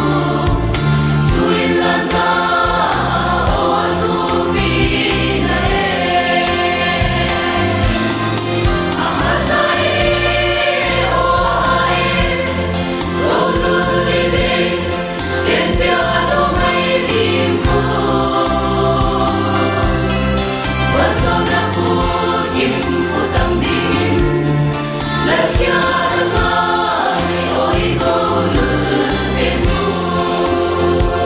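Mixed choir of women's and men's voices singing a gospel song in sustained phrases.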